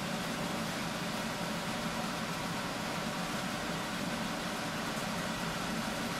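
Steady, even room noise: a constant hiss and hum with no distinct events.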